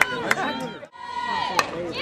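Players and spectators at a softball game calling out, with a few sharp knocks; the sound drops out briefly about a second in.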